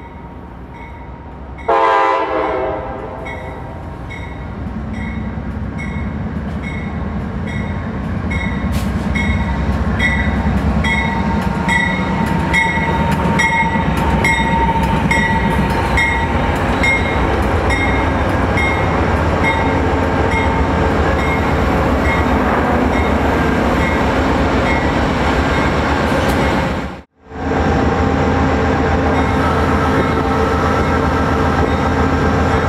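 A diesel locomotive horn blows one short chord about two seconds in. A bell then rings at a steady beat of about two strokes a second while the low rumble and wheel noise of passing trains build and hold. The sound drops out briefly a few seconds before the end, then the train rumble resumes.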